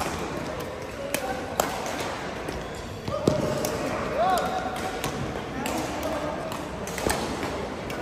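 Badminton rally in a large echoing sports hall: several sharp racket strikes on the shuttlecock, a second or two apart, with a brief shoe squeak on the court floor about halfway through and players' voices around.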